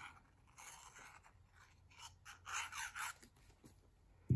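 Faint, soft scratching and rustling of the fine tip of a liquid glue squeeze bottle being drawn across a small piece of cardstock, in a few short strokes with small clicks of handling, the loudest a little past the middle.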